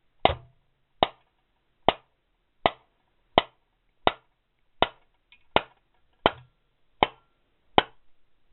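Hammer blows on a steel drift rod, knocking a press-fitted main bearing out of a Piaggio Ciao moped's aluminium crankcase half. There are eleven sharp strikes, evenly spaced about three-quarters of a second apart.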